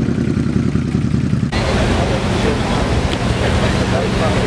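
Wind noise on the camera microphone with a crowd talking in the background. About a second and a half in, the sound changes abruptly to a brighter, hissier rush.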